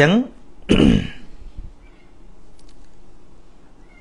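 A man clears his throat once, about a second in, just after a short voiced sound.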